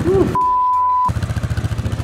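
A quad (ATV) engine running with a fast, even pulse. About a third of a second in, a steady high censor bleep sounds for under a second, and a short cry of a voice comes right at the start.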